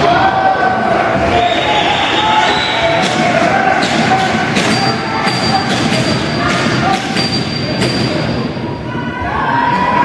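Box lacrosse play on an indoor floor: a run of sharp knocks and thuds from the ball and sticks, thickest in the middle, over continuous shouting from players and spectators.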